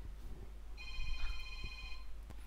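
A steady electronic tone made of several pitches held together, starting about three quarters of a second in and lasting over a second, over a low steady mains hum.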